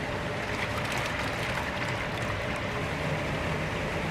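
Steady machine running under rushing, splashing water from a fish-transport tank of brown trout being scooped with a long-handled dip net.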